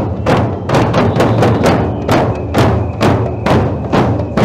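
A group of marching drummers beating large bass drums and hand-held frame drums together, a steady even beat of a little over two strokes a second.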